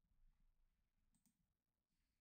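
Near silence: faint room tone, with a couple of faint short clicks about a second in.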